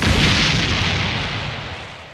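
Explosion sound effect: a sudden blast that starts at full loudness and then dies away steadily over about three seconds.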